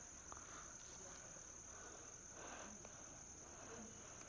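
Faint, steady, high-pitched insect chirring.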